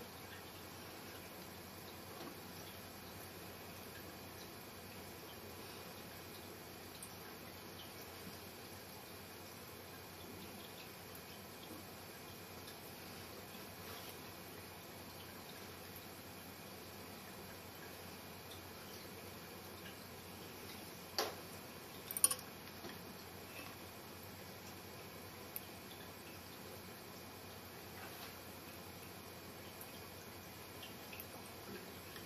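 Quiet steady room hiss with a few small handling clicks from hands working fly-tying tools at a vise, the loudest two about twenty-one and twenty-two seconds in.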